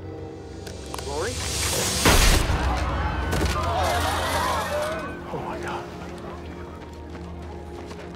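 A single loud pistol shot about two seconds in, followed by a crowd screaming and shouting in panic for a few seconds. A steady, low film-score drone plays under it all.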